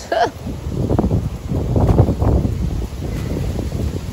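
Wind buffeting the microphone, a low rushing noise that swells and drops, with the leaves of a potted plant rustling as it is handled.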